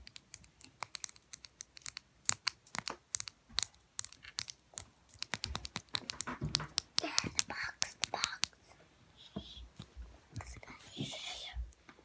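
Long false fingernails tapping quickly on a plastic lip gloss tube, a dense run of sharp clicks that stops about three-quarters of the way through. A soft whisper follows near the end.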